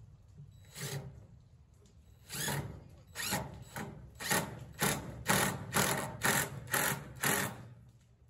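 Cordless drill run in short pulses into the bottom of a redwood raised-bed frame: two separate bursts, then a regular run of about two a second.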